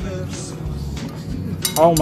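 Background music playing steadily, with a light clink of a dinner plate as the roll is set down on it, and a man's voice starting near the end.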